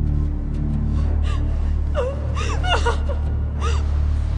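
Low, steady music drone, with a person's short gasping, whimpering cries breaking in from about a second in until near the end.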